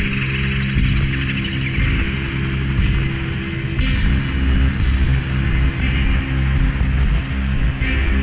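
Music with a heavy bass and held low notes, the pattern shifting about halfway through.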